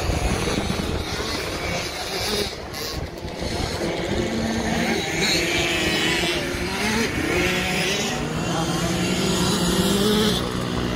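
Several kids' 50cc two-stroke motocross bikes running on the track, their engines rising and falling in pitch as the riders work the throttle, louder in the second half as a group comes closer.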